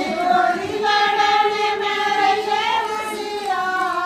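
Women singing a jakdi, a North Indian wedding folk song, in voices only, with long drawn-out notes; one note is held steady for about two seconds in the middle.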